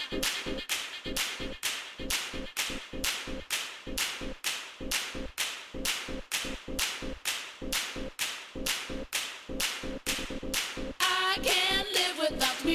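Dance track in a stripped-down percussion passage: sharp clap-like hits on every beat, about two a second, over a faint held tone. A voice begins singing near the end.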